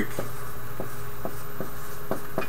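Dry-erase marker writing on a whiteboard: a run of short, separate strokes as letters are written.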